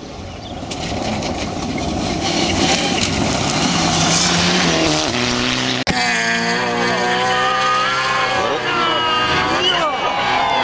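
Mitsubishi Lancer Evo rally car coming in at speed on a gravel stage, its engine growing louder over the first couple of seconds. After a sudden cut about six seconds in, a Honda CRX rally car's engine revs up and down through gear changes.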